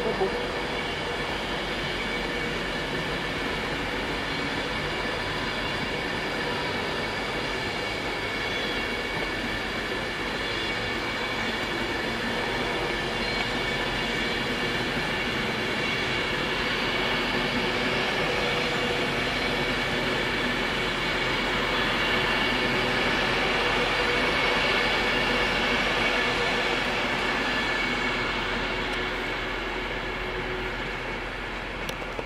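Class 390 Pendolino electric train running past, a steady rumble overlaid with several sustained high whining tones; it grows gradually louder through the second half and eases off near the end.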